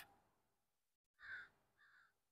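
Near silence with two faint, short bird calls, one about a second in and one near the end.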